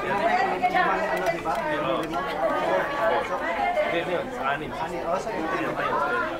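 Crowd chatter: many people talking over one another at once, with no single voice standing out.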